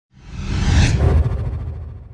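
Logo-intro sound effect: a whoosh with a deep rumble that swells for about a second, then fades away.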